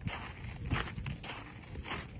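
Footsteps crunching in snow, several steps in a walking rhythm.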